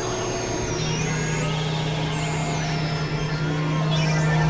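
Dense experimental electronic music: a steady low drone comes in a little under a second in, under high synthetic tones that step up and glide back down.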